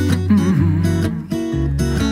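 Acoustic guitar playing the accompaniment of a song between two sung lines.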